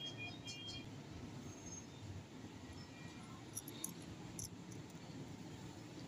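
Faint room noise with a few light, small clicks about midway: a SIM card tray being pushed into a smartphone's side slot.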